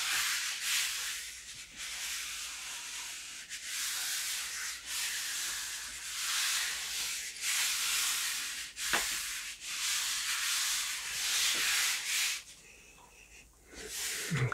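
Bare palms rubbing the back of a sheet of Fabriano Rosaspina paper on a gel printing plate, burnishing it to lift the print: repeated dry swishes about once a second. They stop shortly before the end.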